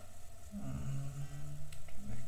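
A man's voice holding a drawn-out hum, starting about half a second in and lasting over a second.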